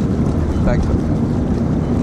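Steady wind rumble on the microphone over the rush of water along the hull of a small fishing boat under way.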